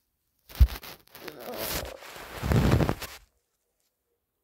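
Handling noise: fabric rubbing and scraping against the phone's microphone, starting with a bump about half a second in and stopping suddenly a little after three seconds.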